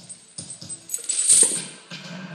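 Steel lifting chains clinking and rattling against each other and the barbell, swelling to a loud jangle about a second in and fading out. The chains are being stripped off the bar to lighten the load between sets of reps.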